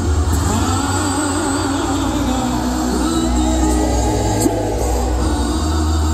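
Live gospel music: a band with drums and a heavy bass line backing a male lead singer and backing vocalists.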